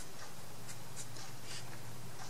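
Paintbrush brushing paint along the edge of a thin laser-cut wooden panel: short, soft scratchy strokes, about four in two seconds. A steady low hum runs underneath.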